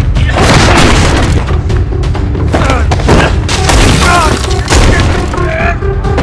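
Fight-scene soundtrack: blows and bodies hitting land as sharp thuds over a loud, dense score with deep booming hits. Men's short grunts and cries come a few times.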